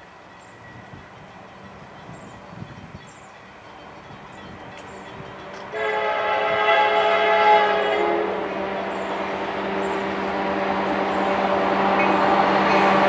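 An approaching train's diesel locomotive, its rumble faint at first and slowly growing. About halfway through, the locomotive's air horn sounds one steady blast of a couple of seconds. After that the train's rumble keeps growing louder as it nears.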